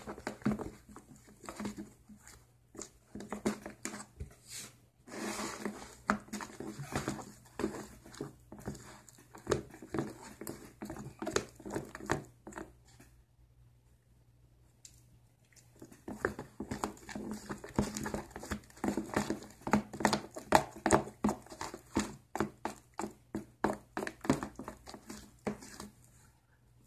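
Plastic spoon stirring and scraping a thick, still-sticky mix of shampoo and cornstarch in a plastic container: a busy run of short wet clicks. The clicks pause for a couple of seconds a little past the middle, then start again.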